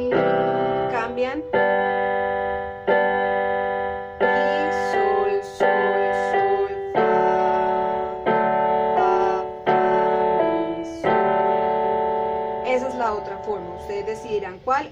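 Casio CTK-150 electronic keyboard with a piano voice, played with both hands: a right-hand melody over left-hand block chords struck about every second and a half.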